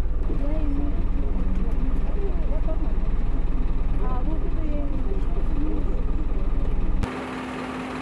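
Bus engine idling, a steady low drone with a fine regular pulse heard inside the passenger cabin, under passengers' voices. About seven seconds in it cuts off abruptly to quieter sound with a steady hum.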